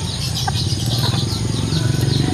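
Outdoor ambience of small birds chirping in quick repeated short calls, over a steady low hum and a thin, high, steady insect drone.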